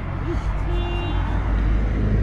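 Road traffic: the low, steady rumble of a vehicle passing along the street.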